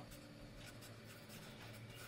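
Faint scratching of a marker pen writing a word on paper.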